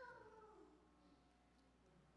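Near silence in a large room, with a faint drawn-out voice at the start that slides down in pitch for about a second and fades.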